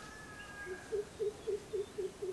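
An animal calling: a run of short, low hoots, about four a second, starting about a second in.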